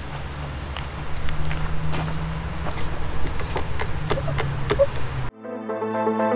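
A steady low hum with scattered light clicks, cut off suddenly about five seconds in by background music.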